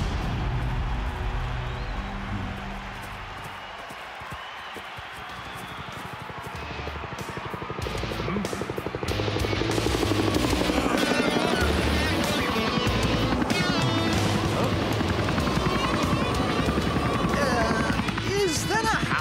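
Helicopter rotor chopping, growing louder about halfway through and then holding steady as it hovers low overhead, with background music playing.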